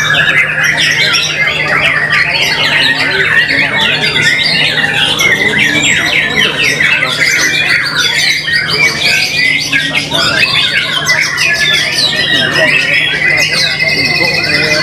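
White-rumped shamas (murai batu) singing in a rapid, unbroken tangle of chirps, trills and whistles, several birds at once, over a steady low hum.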